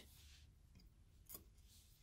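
Near silence: room tone, with one faint short click a little past halfway through.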